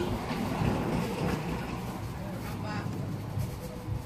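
Wind buffeting the microphone, a steady low rumble, with faint voices in the background.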